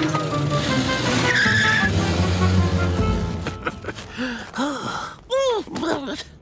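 Cartoon soundtrack: background music with comic sound effects, ending in a quick run of rising-and-falling whistle-like glides.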